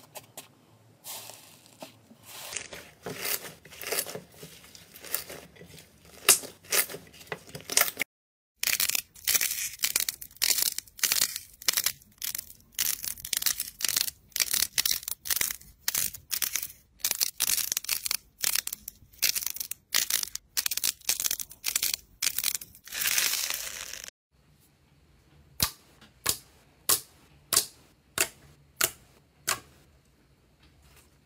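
Hands squeezing and pressing slime, making quick trains of crackling clicks and pops. The crackling is softer at first, dense and loud through the long middle stretch, then drops to sparse, softer pops near the end.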